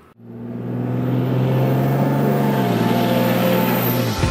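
A motor vehicle's engine running steadily, fading in over the first second and dropping slightly in pitch near the end as it passes, with a faint high whine above it.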